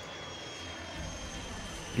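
A-10 Thunderbolt II flying low, its twin TF34 turbofan engines giving a steady rush with a thin high whine that slowly falls in pitch.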